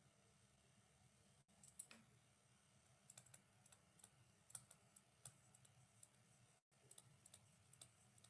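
Near silence with faint, irregular light ticks of a stylus tapping on a tablet screen as words are handwritten.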